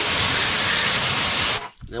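Pressure washer spraying water into a car's wheel well, a loud steady hiss of spray hitting the metal that cuts off about one and a half seconds in.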